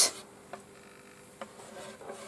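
Faint handling noise of a painting board being tipped by hand: a soft rub against its wooden edge and two small ticks, about half a second and a second and a half in.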